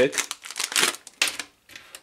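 Clear plastic bag crinkling and rustling as test leads with hook-clip probes are pulled out of it: a run of quick rustles that dies away about a second and a half in.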